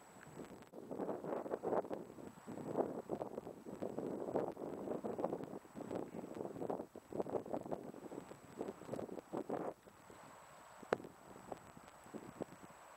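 Wind buffeting the camera's microphone in irregular gusts that die down about ten seconds in, followed by a single sharp click.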